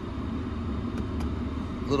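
Steady low rumble of a parked car's cabin background, with two faint clicks about a second in.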